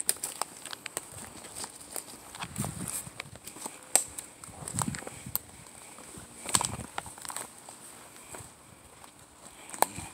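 Footsteps on a forest floor, crunching through dry leaf litter and dead twigs, with irregular sharp snaps of sticks underfoot.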